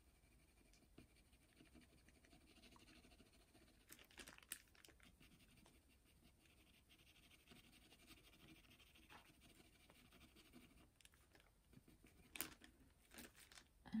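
Near silence, with the faint scratch of a watercolour pencil on paper and a few faint ticks about four seconds in and again near the end.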